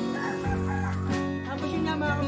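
A rooster crowing over steady background guitar music.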